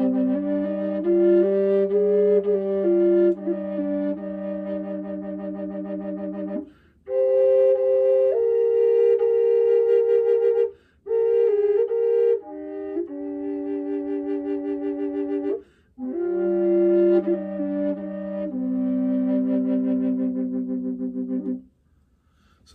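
Aromatic cedar contrabass G/C Aeolian Native American-style drone flute played with the pinky hole uncovered: a melody over a steady drone in five phrases with short breath pauses. The drone sits on low G in the first and last phrases and an octave higher in the middle ones, the alternating note the open pinky hole gives, which runs a little sharp, above all on the lower melody notes.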